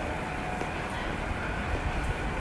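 Steady low rumble and hiss of ambient noise in an underground MRT station passageway.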